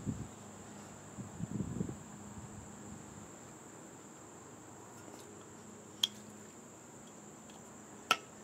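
Steady high-pitched trilling of crickets, with a short low rustle of handling about a second and a half in and a single sharp click about six seconds in as the 3D-printed PLA trigger handle is pressed onto the hairspray can's top.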